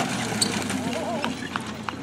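A pair of horses drawing a marathon carriage past at speed: a few scattered hoofbeats and sharp metallic clinks of harness and carriage over a steady low hum, with a voice faint in the background.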